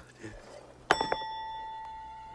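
A single bright ding about a second in, with a lighter tap just after it, ringing on in a clear tone that slowly fades.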